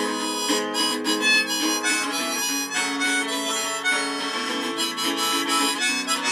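Harmonica playing a melody over a steadily strummed Line 6 Variax acoustic-electric guitar, an instrumental break between sung verses.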